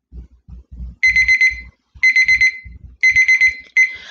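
Countdown timer going off: quick high beeps in groups of four, one group each second, starting about a second in. It marks the end of the one-minute-30-second timed work period.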